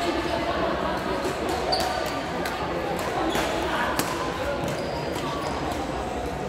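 Badminton rally: sharp racket-on-shuttlecock strikes about once a second, with a short sneaker squeak on the court floor about two seconds in, over the murmur of voices in a large echoing hall.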